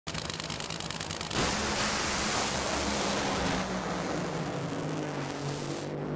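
Nitro Funny Car engines, supercharged V8s on nitromethane, running with a rapid crackling pulse at the starting line. About a second and a half in they launch into a loud full-throttle roar, which eases off after a couple of seconds as the cars run away down the track.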